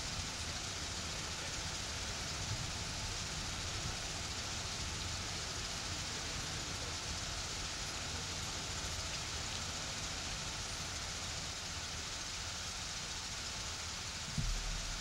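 A steady, even hiss of background noise with no distinct sounds in it.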